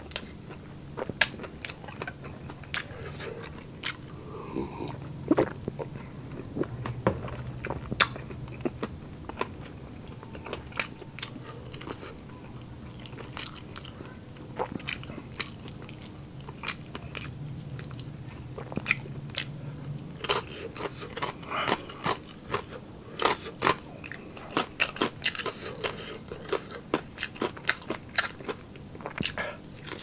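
Close-up chewing and crunching of crispy fried pork: a steady run of sharp, crackly crunches and wet chews, coming thicker in the last third as a fresh piece is bitten into.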